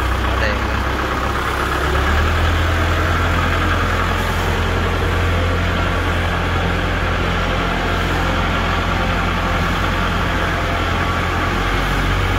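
Kubota L5018 tractor's four-cylinder diesel engine running steadily at idle, its note stepping up slightly about two seconds in.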